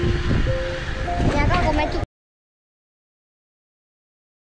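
People's voices over wind rumbling on the microphone for about two seconds, then the sound cuts off abruptly to dead silence.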